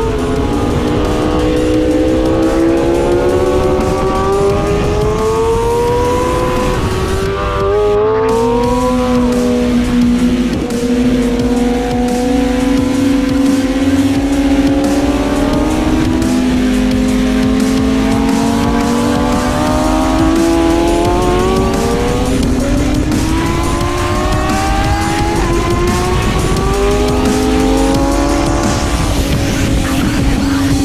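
BMW S1000RR inline-four engine pulling hard on track, its pitch climbing steadily through each gear and stepping down at every gear change, several times over, with rushing wind beneath it.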